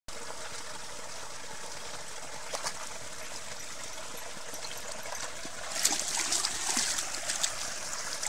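Shallow brook trickling steadily over a small cascade. From about six seconds in, a run of sharper splashes as a dog moves about in the water.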